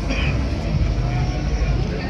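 Outdoor street ambience: a steady low rumble with faint voices of passers-by.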